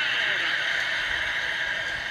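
Steady hiss-like background noise, even and unbroken, with no clear rhythm or pitch.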